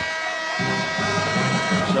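Arena end-of-period horn sounding one long steady blast as the first-half clock expires, stopping just before the end. Music comes in underneath about half a second in.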